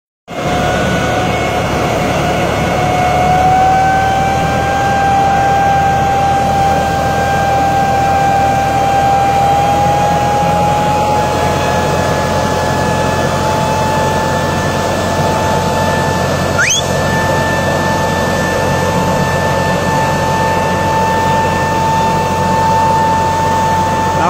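Tractor-mounted air-blast mist sprayer running at work: a steady engine drone under a loud, steady high whine that creeps slightly higher in pitch over the first ten seconds. A brief high rising chirp sounds about two-thirds of the way through.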